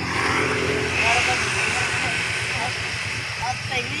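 A motorcycle tricycle's engine idling steadily, with a broad rushing swell of traffic noise about one to two seconds in.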